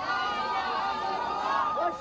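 A large crowd of men chanting and shouting together, many voices overlapping.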